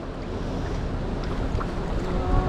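Wind buffeting the microphone over the steady wash of the sea on a rocky shore, with a few faint splashes of hands and fish in a shallow rock pool.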